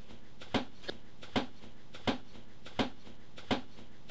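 A short, sharp tap or click repeated at even intervals of about 0.7 seconds, five times, with a fainter one between the first two.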